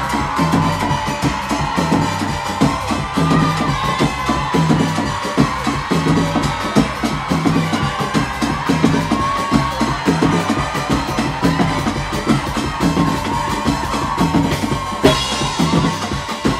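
Live band playing banamba dance music: dense hand-drum and drum-kit percussion over a heavy bass line, with a wavering melody line above it.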